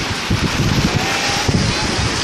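Wind buffeting the microphone in gusts, over a steady wash of sea surf, with faint distant voices of people on the beach.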